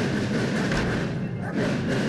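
A student marching band (banda de guerra) playing in a street parade: snare and bass drums with brass, heard as a dense, steady wash of sound.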